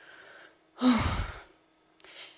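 A woman sighing: a faint intake of breath, then about a second in a short voiced "oh" that trails off into a breathy exhale.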